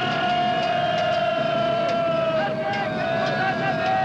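Cartoon battle soundtrack: one long, steady high note with a slight waver, held over a dense crowd-like din.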